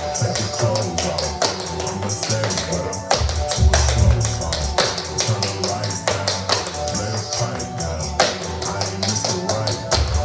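Tap shoes striking a wooden floor in quick, uneven runs of sharp clicks, several a second, over a slowed, chopped-and-screwed hip-hop track with heavy bass.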